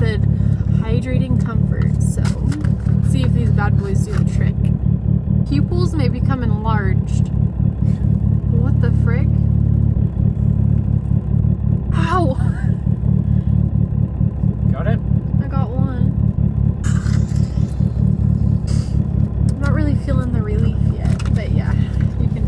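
Mitsubishi Lancer Evolution VIII's turbocharged four-cylinder engine idling steadily, heard from inside the cabin, with quiet talking over it.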